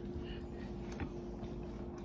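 Quiet room tone with a faint steady hum and one light click, a fork against a plate, about a second in.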